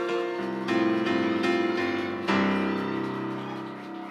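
Stage keyboard piano playing the closing chords of a show-tune accompaniment. A final chord is struck a little over two seconds in and left to ring and fade.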